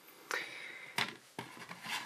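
Light handling noises: three short knocks with soft rubbing between, as a small red dot sight is set down on its cardboard box and a screwdriver is picked up.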